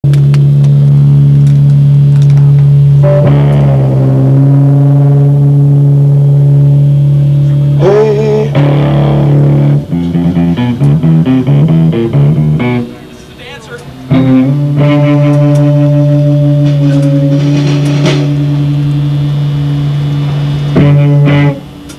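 Loud amplified live rock with a heavy electric guitar, holding long droning chords, with a quick choppy run of notes about ten seconds in and a brief drop in level a few seconds later before the drone returns.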